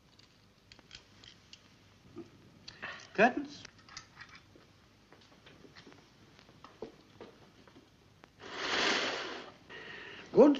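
Small metallic clicks of surgical instruments worked at a patient's face, with a brief gliding squeal about three seconds in and a hiss lasting about a second near the end.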